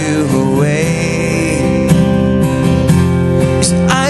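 A man's voice singing long, sliding held notes over a strummed acoustic guitar, live.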